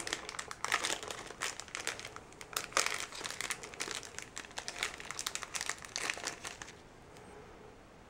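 Plastic candy wrapper being crinkled and torn open by hand, a dense run of sharp crackles that stops about six and a half seconds in.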